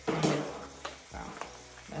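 A woman's voice saying a few words, with a few short, light clicks from a cardboard cornbread-mix box being handled between them.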